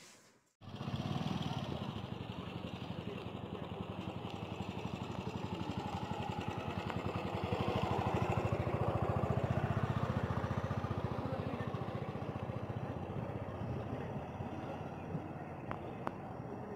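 A motor vehicle engine running with a rapid, even beat. It starts suddenly about half a second in, grows louder to a peak in the middle and then fades, as of a vehicle passing by.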